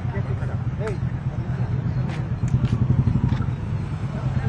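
Outdoor ambience: a steady low rumble under faint voices, with a few sharp clicks in the second half.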